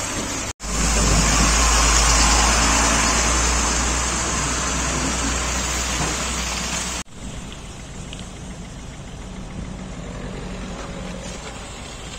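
A heavy salt-spreader truck's diesel engine running close by, a deep steady sound under a broad hiss, for about six seconds. It cuts off abruptly, and quieter steady traffic noise follows.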